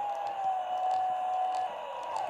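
Tonka Power Movers toy cement mixer running with its drum turning, making its electronic noises: a steady whine that dips slightly in pitch near the end.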